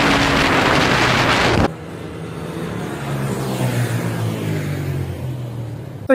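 Wind rushing over the microphone with a 150cc single-cylinder motorcycle engine running at speed, cutting off abruptly under two seconds in. After that comes a quieter motorcycle engine note that wavers up and down in pitch.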